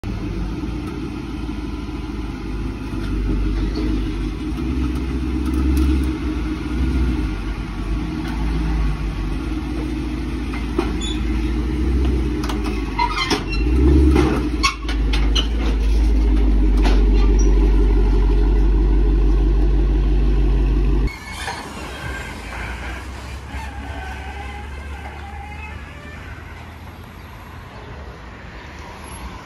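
A vehicle engine runs steadily while a car is loaded onto a flatbed tow truck, with a string of metallic clanks and knocks from the ramp and bed about halfway through. The engine sound cuts off suddenly past the two-thirds mark, leaving quieter street traffic as the loaded truck drives away.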